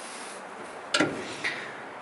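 Handling noise of parts being fitted in a truck's engine bay: a sharp click about a second in and a softer one about half a second later, over a steady background hiss.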